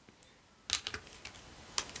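Long fingernails clicking and tapping against stiff oracle cards as a card is picked up from the spread: a quick cluster of light clicks about two-thirds of a second in, then a few faint ticks and one more click near the end.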